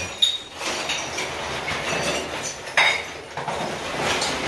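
Clattering, clinking noise from broken ceiling material, with a sharp knock just after the start and another about three seconds in.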